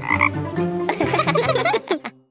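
Cartoon frog croaking as a sound effect: one short croak just after the start, then a longer run of chattering croaks from about a second in until near the end.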